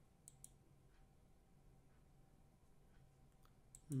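Near silence with a few faint computer mouse clicks: two close together a little after the start, and more near the end.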